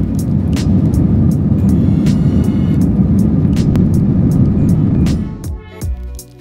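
Airbus A321ceo takeoff roll heard from inside the cabin: dense low engine and runway noise at takeoff thrust, fading out about five seconds in. Background music with a steady beat plays over it.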